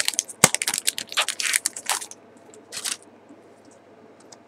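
Foil wrapper of a Pokémon Roaring Skies booster pack crinkling as it is handled and opened: a rapid run of sharp crackles for about two seconds, then one more short crinkle near three seconds.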